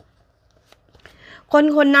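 Tarot cards being handled and shuffled, a faint soft scratch of cards during the first second and a half, then a woman starts speaking about one and a half seconds in.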